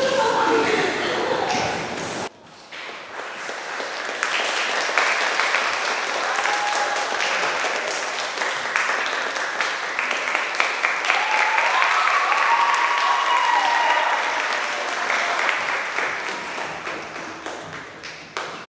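Audience applauding and cheering, with a few whoops. It swells up about two seconds in and tails off near the end.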